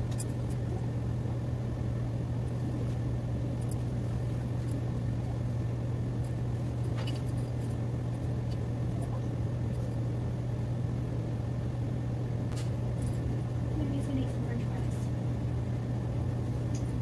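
A steady low hum, like a motor or appliance running, with a few faint ticks and clicks over it.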